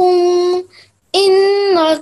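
A child reciting a Quranic verse in a held, chanting voice: two long drawn-out phrases with a short pause between them, about a second in. The recitation is judged good, but the elongation on 'inna' should be held longer, about two counts.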